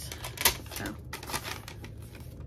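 Paper and plastic packaging being handled, a run of short crinkles and rustles, the sharpest about half a second in.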